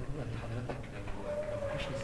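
A faint, distant voice speaking off-microphone, as from a student interjecting from the audience.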